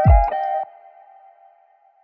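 Boom bap hip hop instrumental ending: a last low drum hit with a chord, then the beat cuts off about two-thirds of a second in, leaving one held note that fades out.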